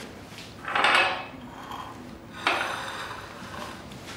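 Kitchen clatter of crockery and utensils being handled on a counter during plating: a brief scraping swell about a second in, then a sharp knock at about two and a half seconds that fades away.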